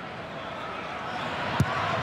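Stadium crowd murmuring steadily, then a single sharp thud about one and a half seconds in: a boot striking a rugby league ball on a penalty kick at goal.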